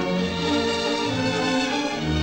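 Orchestra playing an instrumental passage of a waltz, with no singing.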